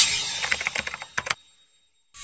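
Animated logo sound effect: a whoosh that fades away, then a quick run of sharp clicks that stops about a second and a half in.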